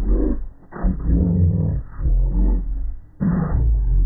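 A voice line played through heavy audio effects, pitched deep and distorted past the point of making out words, in four phrase-like stretches with short gaps between them.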